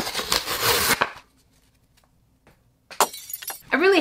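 Brown paper mailer package torn open by hand, a noisy rip for about the first second, then a few small clicks and rustles of handling near the end.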